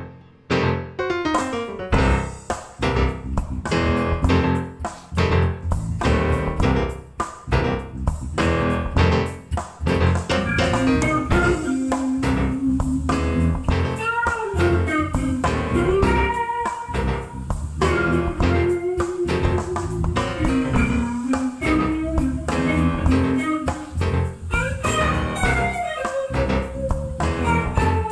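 A soul and R&B band playing a groove: a keyboard riff with drum kit, electric bass and hollow-body electric guitar. The drums come in with a steady beat about two seconds in, and a held melody line joins at around ten seconds.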